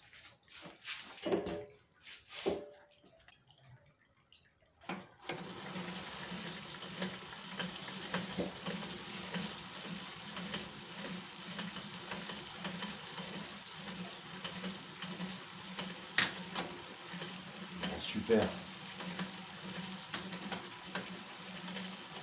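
Car alternator converted into a brushless motor starts up about five seconds in and drives the bicycle chain, spinning the rear wheel with a steady whirring hum and chain hiss. A few light clicks and knocks come before it, and there is one sharp click partway through.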